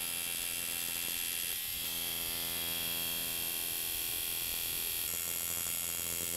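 Electric tattoo machine switched on and buzzing steadily at an even pitch as it works on skin.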